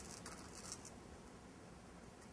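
Near silence with a few faint clicks in the first second: small beads being handled and slid onto metal craft string.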